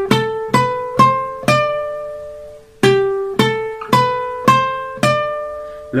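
Requinto guitar played with a pick: a short run of single notes climbing up the neck, played twice with a short pause between. It is the fill (llamada) that leads from E minor into C major in a pasillo.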